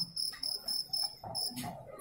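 High-pitched chirping, a steady note pulsing about five times a second, that stops about a second and a half in. Under it is a faint murmur of voices and a brief rustle near the end.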